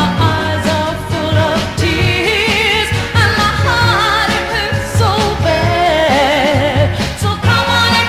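A 1960s soul record playing: a singing voice with vibrato over a steady bass line and beat.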